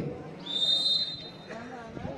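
A referee's whistle blown once, a single steady high-pitched blast lasting under a second, over a low murmur from the crowd.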